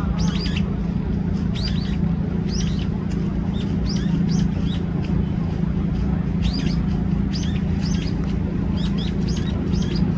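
Brown-eared bulbul giving short, high chirps in small, irregular clusters, calling with its bill closed. A steady low hum runs underneath.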